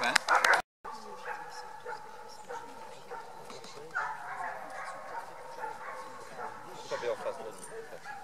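Dog whining and yipping in high, wavering cries, loud at first and cut off suddenly less than a second in; after that, fainter yips and voices in the background.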